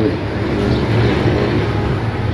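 A steady low machine hum, with a microfiber cloth being rubbed over car paint.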